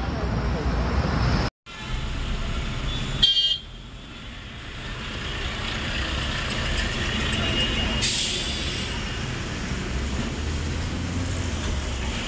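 Night-time roadside traffic: a short, loud vehicle horn blast about three seconds in, then a bus and a truck passing with steady engine and road noise. At the start, a steady low rumble with voices, broken off by a moment of silence at a cut.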